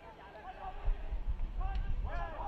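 Pitch-side sound of a soccer match: players' voices calling out faintly across the field. About a second in, a low rumbling noise joins them.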